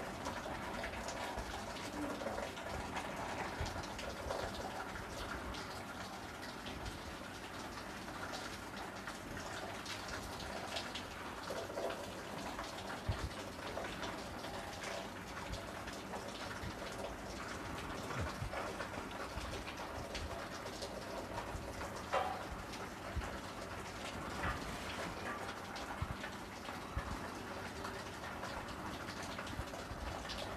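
Marker pen writing on a whiteboard: scattered short scratchy strokes over a steady room hiss.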